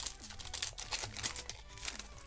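Foil wrapper of a Pokémon trading-card booster pack crinkling and tearing as it is pulled open, a quick run of sharp crackles, over faint background music.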